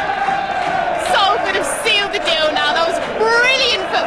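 Football crowd cheering and chanting in celebration of a goal, with excited voices shouting over the din again and again.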